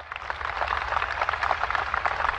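Applause from a large audience: many hands clapping densely together, building up over the first half second and then holding steady.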